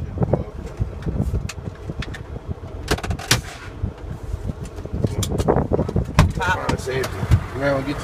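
Semi-truck cab interior: the diesel engine's low rumble as the tractor rolls slowly, with scattered sharp knocks and rattles, the loudest about three seconds in.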